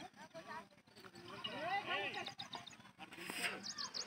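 Distant people's voices calling and shouting, too far off to make out words, loudest in the middle. A few quick high bird chirps come near the end.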